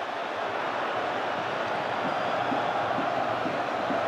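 Football stadium crowd, a steady wash of noise from the stands.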